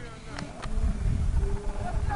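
Cars driving toward the microphone on a road, with a buzzing engine drone over an uneven rumble of wind on the microphone.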